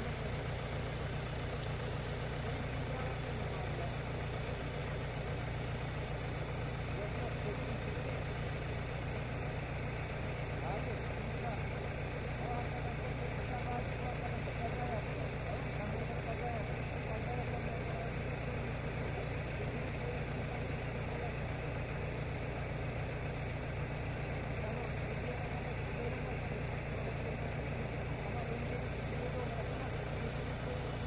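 A vehicle engine idling steadily, a continuous low rumble.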